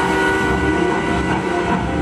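Soundtrack effects of a steam locomotive running: a whistle holding a chord that fades out in the first half-second, over the steady rumble of the engine rolling along the rails.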